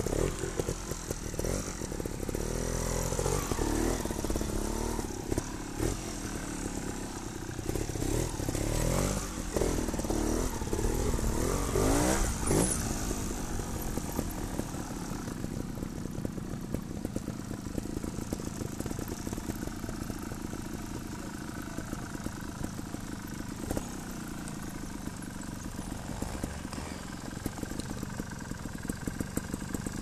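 Trials motorcycle engine running, its revs rising and falling in repeated short blips for about the first twelve seconds, then running more steadily at low revs.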